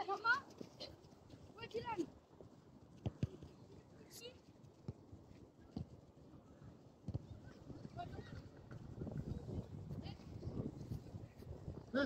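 Children's high-pitched shouts and calls across a football pitch, short and scattered, with a couple of sharp knocks in between.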